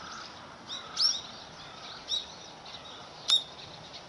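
Small birds chirping: a few short, sharp, high calls, the loudest about a second in, at about two seconds and near the end, over a steady outdoor background hiss.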